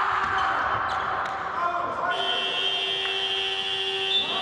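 Basketball dribbled on a hardwood court. About two seconds in, the arena's end-of-game buzzer sounds: a steady high tone held through the rest.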